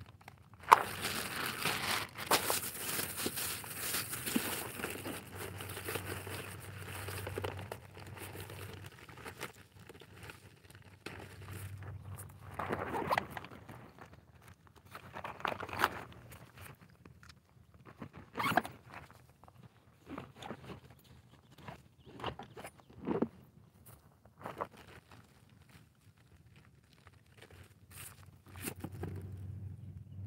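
Rustling, crinkling handling sounds close to the microphone, densest in the first several seconds, then a scattered series of short clicks and knocks, over a steady low hum.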